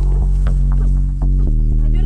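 Deep droning background music: a loud low hum that throbs and shifts pitch a few times.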